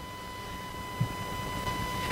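A pause in speech: room tone with a steady faint high whine and a soft low knock about a second in.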